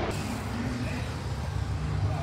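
A steady low rumble of engines running in the background.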